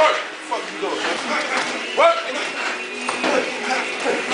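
Indistinct voices and short shouts of people around a boxing sparring ring, with a louder rising shout about two seconds in.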